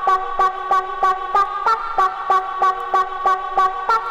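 Early rave track mixed from vinyl, in a stretch with the bass gone: a repeating high synth riff over a sharp percussion hit about three times a second.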